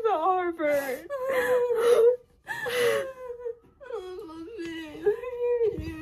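A teenage girl crying with joy, sobbing and whimpering in several bouts, her voice wavering up and down through tears at a college acceptance.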